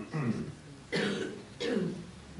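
A person coughing three times in quick succession, short throaty coughs about half a second apart.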